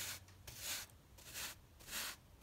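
Wide paintbrush sweeping loose kitty-litter grit across a neoprene gaming mat: several short, faint brushing strokes.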